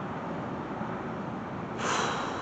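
A man drawing a short breath near the end, over steady background noise.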